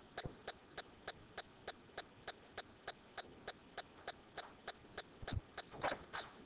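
Faint, steady ticking: sharp clicks evenly spaced at about three a second, over quiet room noise.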